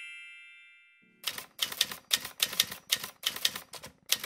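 A bright ringing chime fades out in the first second. After a short gap comes a quick, uneven run of typewriter keystroke clicks, about five a second: a typing sound effect as text appears on a title card.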